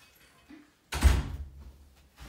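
A single sudden loud thump about a second in, heavy in the low end, dying away within about half a second.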